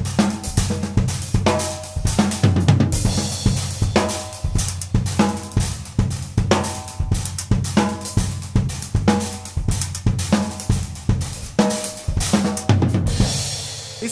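Mapex drum kit played with sticks in a busy groove of bass drum, snare, hi-hat and cymbals, with cymbal crashes about three seconds in and again near the end.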